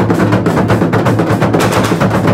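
Traditional Akan drums beaten with curved sticks in a fast, dense, unbroken rhythm.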